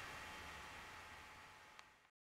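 Near silence: faint room tone fading out, with one faint tick near the end.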